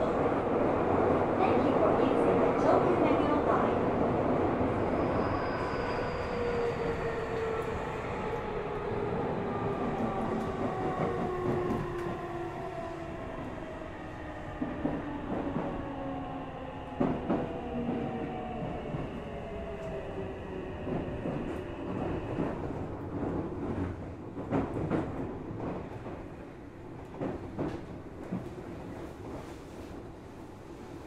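Onboard sound of a Tokyu 3000 series train's Toshiba IGBT inverter and traction motors: several whining tones fall steadily in pitch as the train slows under regenerative braking. The whine dies away a little past twenty seconds in, leaving scattered wheel clicks and knocks as the train rolls slowly.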